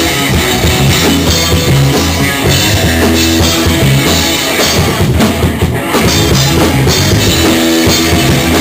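Live punk rock band playing an instrumental passage: electric guitars, bass and drum kit, loud and steady, with no singing.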